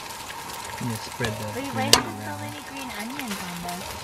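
Korean pancake batter with green onions frying in a pan on a portable gas stove: a steady sizzle. A utensil knocks once against the pan about two seconds in.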